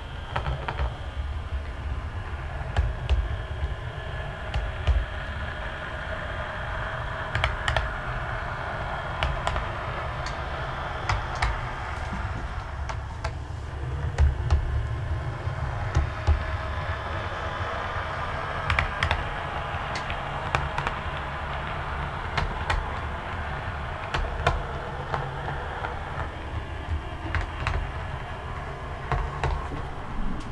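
Bachmann Class 121 OO-gauge model diesel railcar running on model railway track: a steady rumble and hum from its motor and wheels, with frequent sharp clicks as it rolls over the track.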